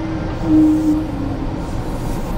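Inside a sleeper-train carriage: a steady low rumble with a droning hum that fades out about a second in.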